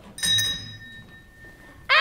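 A single struck chime ringing out bright and clear, fading away over about a second and a half.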